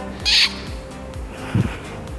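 A woman blowing a kiss: one short, breathy smack about a quarter second in, the loudest sound here. A soft low thump follows about a second and a half in, over background music with a steady beat.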